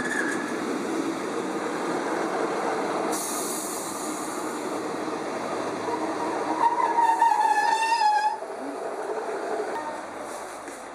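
A First Great Western Class 150 diesel multiple unit running past close alongside the platform, its wheels rumbling on the rails. There is a short burst of hiss about three seconds in, and a high, wavering metallic squeal for about a second and a half just past the middle, the loudest part.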